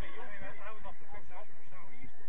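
Several men's voices talking and calling out at once, too mixed and distant to make out words.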